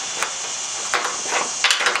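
Wiss M400 compound-action offset snips cutting into a thin painted galvanized steel roofing panel: a few sharp crunching snips as the jaws close on the metal.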